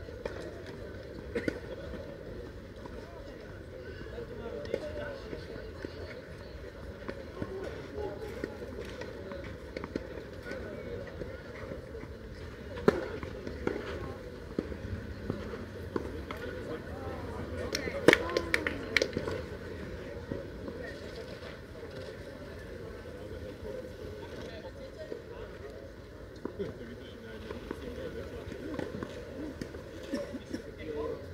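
Tennis ball on a clay court: a single sharp knock a little before the middle, then a quick cluster of several sharp knocks just past the middle, over faint, indistinct voices.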